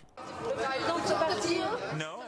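Many voices chattering and overlapping in a large hall: the background murmur of a crowd of reporters.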